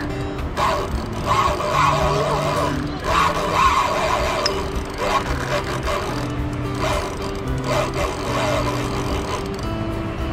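Music: a melody of held notes moving from one pitch to the next.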